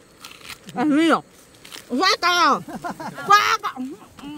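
Women's voices making three short wordless exclamations, each rising and falling in pitch, about a second apart.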